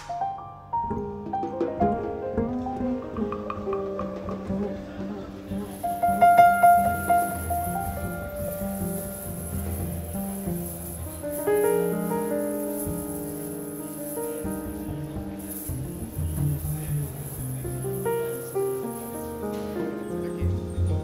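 Piano music playing, overlapping sustained notes and chords, loudest about six seconds in.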